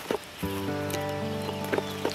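Dry leaves and twigs crackling as the forest floor is handled. About half a second in, background music of long held chords comes in and holds, with a few more crackles over it.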